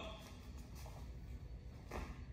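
Faint room tone: a steady low hum with no distinct sounds.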